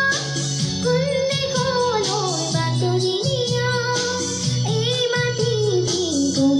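A girl singing a melodic song, her voice holding notes and gliding between them, over a low instrumental accompaniment.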